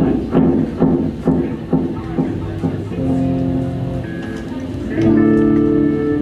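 Guitar being checked between songs: single notes plucked about twice a second, then a held chord about three seconds in and a louder held chord near the end.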